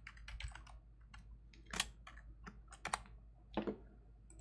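Computer keyboard keys tapped while a password is typed: a quick run of keystrokes at the start, then scattered single keystrokes, a few of them louder, about two and three seconds in.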